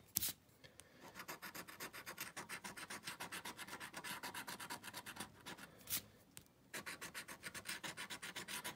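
A scratch-off lottery ticket being scratched in rapid back-and-forth strokes, about nine a second, with two short pauses and two sharper ticks, one near the start and one just before the second pause.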